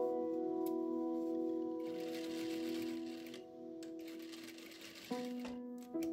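Soft background piano music: slow held chords, one struck at the start that slowly fades, then a new chord about five seconds in.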